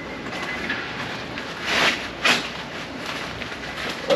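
Handling noises: scraping and rustling as a spare tire cover is straightened on a rear-mounted spare tire, with two short louder scrapes near the middle.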